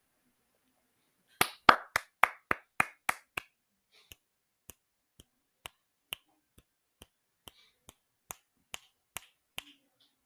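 Hand claps, about eight in quick succession starting about a second and a half in. They are followed by a run of quieter, sharper finger snaps, about two a second, that stops just before the end.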